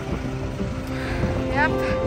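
Soft background music of held notes that change pitch every half second or so, over low wind rumble on the microphone.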